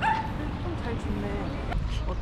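A dog yipping and whining in short repeated calls, one rising into a high held note at the start, then lower, shorter calls.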